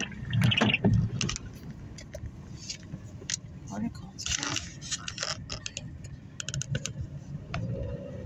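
Car cabin road noise from a slowly moving car, a steady low rumble. A cluster of light clicks and rattles comes about four to five seconds in, with a few more near seven seconds, and low voices are heard briefly at the start.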